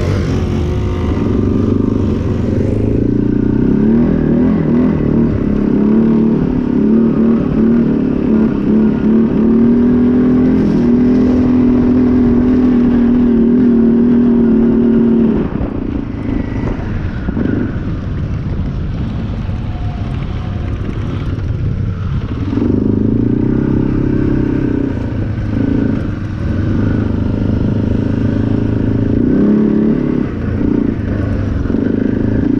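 ATV engine running under throttle at a steady pitch, easing off about halfway through and then pulling again near the end.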